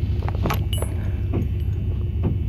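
A few short metallic clicks and clinks as a brass key is worked into a lock cylinder's plug, over a steady low hum.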